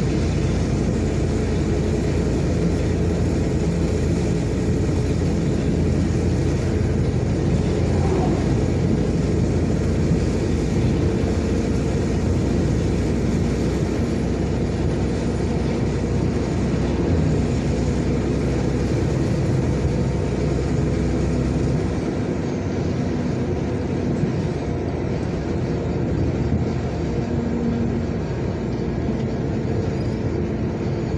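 Steady engine and tyre noise of a vehicle driving along a highway, heard from inside the cab, close behind a loaded log truck. The low rumble eases off a little about three quarters of the way through.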